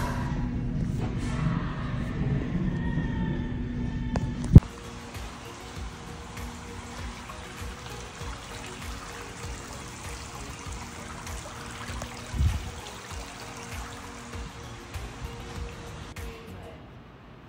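A loud rushing noise with faint wavering tones for about four and a half seconds, cut off by a sharp click. Then soft background music plays.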